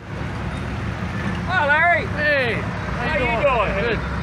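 A steady low engine rumble, with people's voices over it from about one and a half seconds in.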